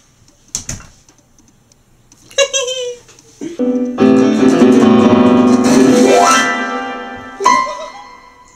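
Electronic keyboard sounding a loud held chord from about halfway, fading away near the end, with a woman's voice over it. A few shorter keyboard notes and a brief vocal sound come before it.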